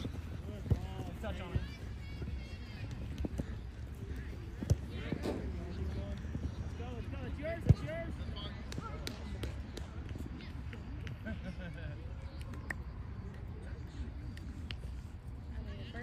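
Distant voices of players and spectators on an open soccer field, with occasional thuds of a soccer ball being kicked; the loudest is a single sharp kick about eight seconds in.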